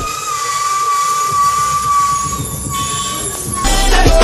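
A tourist bus's air horn held in one long, steady note for about three and a half seconds, cutting off shortly before the music returns.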